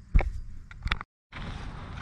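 Two short knocks of the camera being handled, the first loud and the second softer, then an abrupt dropout to silence at an edit, followed by faint steady outdoor background noise.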